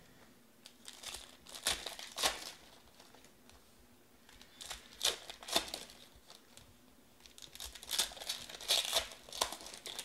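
Shiny foil trading-card pack wrappers of 2019 Panini Elite Extra Edition being handled and torn open. The crinkling and tearing comes in three bouts.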